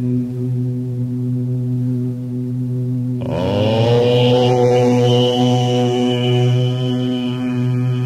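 Chanted mantra music over a steady low drone. About three seconds in, a second held tone comes in, slides down in pitch and settles.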